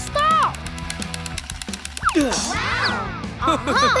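Cartoon background music with a quick beat, overlaid by animated characters' wordless high-pitched exclamations, most of them in the second half.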